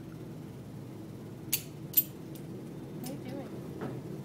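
Two sharp clicks about half a second apart a little after a second in, then a few fainter taps, over a steady background hum.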